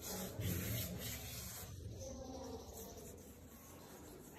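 Faint rubbing and scraping close to the microphone, strongest in the first second and a half and fading toward the end.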